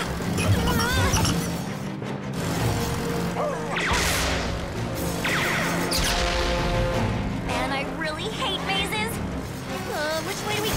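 Cartoon action score with the characters' vocal effort sounds. Two noisy laser-blast effects come about four and five and a half seconds in.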